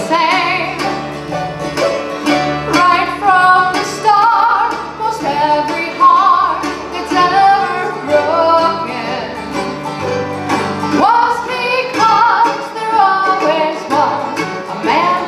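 Live bluegrass band playing a song: a woman sings lead over acoustic guitar, mandolin, banjo and a walking upright bass.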